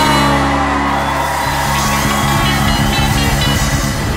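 Rock band music with guitar: a sustained chord, then a steady beat comes in about a second and a half in.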